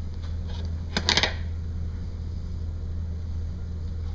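Steady low room hum, with a short crackling rasp about a second in as the athletic tape and taping supplies are handled.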